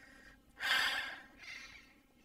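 A person's breath into a close microphone: a loud exhale about half a second in, then a shorter, weaker one.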